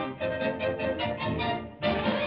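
Orchestral title music from a 1948 cartoon soundtrack: a bouncy tune in short notes, several a second, with a loud new phrase coming in near the end.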